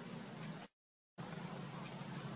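Steady outdoor background noise, a hiss with a low hum beneath it. It cuts out to dead silence for about half a second shortly after the start, then comes back unchanged at a video edit.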